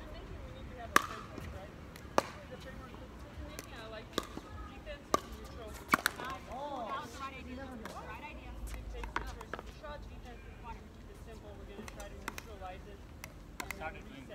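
Pickleball paddles striking a hollow plastic pickleball: a string of sharp pops at irregular gaps of about a second over the first six seconds, then a few lighter ticks.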